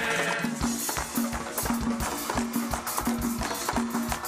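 Canarian carnival murga's percussion section, drums and cymbals, playing a steady, fast dance rhythm. A held chord from the group breaks off about half a second in, leaving the drums.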